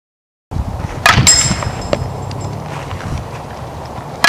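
A softball bat hits a pitched softball about a second in: a sharp crack with a high ringing ping that dies away over a second or so, followed by a fainter knock. The first half second is silent.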